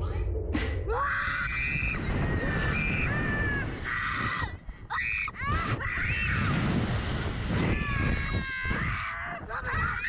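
Two girls screaming on a Slingshot reverse-bungee ride as it launches: long, high screams starting about a second in, with brief breaks, over a steady rushing of wind on the onboard microphone.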